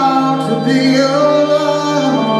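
Live blues band: a woman singing held, gliding notes over a sustained organ chord.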